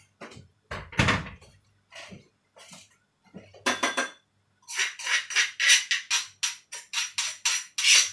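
A metal spoon clinking quickly and repeatedly against a stone mortar bowl, about five strikes a second, as liquid is stirred in it. Before that there is a heavier thump about a second in and a single ringing clink near the middle.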